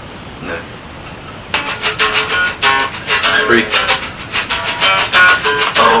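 Acoustic guitar strummed hard and fast in a driving, percussive rhythm, coming in about a second and a half in after a brief lull with only faint room hiss.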